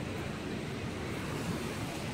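Steady wash of ocean surf around shoreline rocks, with wind on the phone's microphone.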